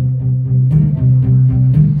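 Acoustic guitar playing a repeating low-string riff, its notes picked in a steady, even rhythm, with no voice over it.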